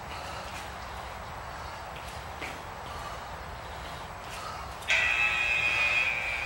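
A few faint footfalls of sneakers on an exercise mat during side-slide kicks, then about five seconds in a loud, steady electronic beep from an interval timer, signalling the end of a 45-second work interval.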